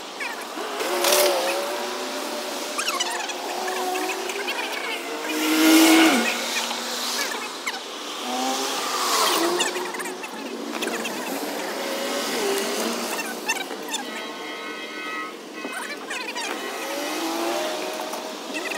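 Cars driving past on a street, each swelling and fading as it goes by, the loudest about six seconds in.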